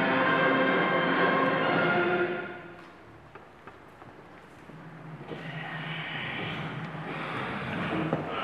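The national anthem's music plays and ends about two and a half seconds in. It gives way to a quiet stretch of room noise with small knocks as people sit down. A steadier sound rises again about five seconds in.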